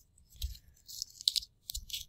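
A shrink-wrapped plastic DVD case being handled and turned over: faint crinkling and light clicks of the plastic in a few short clusters.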